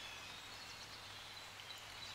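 Near silence: a faint, steady background hiss.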